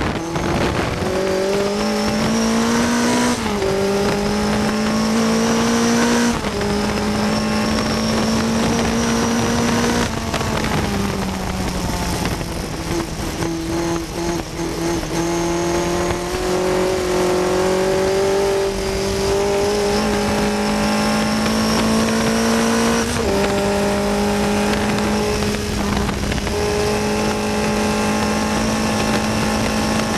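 1960 Cooper T53 Lowline's four-cylinder racing engine, heard on board at high revs. Its note climbs slowly, then steps abruptly in pitch a few times at gear changes and lifts, over a rush of wind and road noise.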